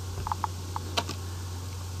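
A few computer keyboard keystrokes, the sharpest about a second in, over a steady low hum.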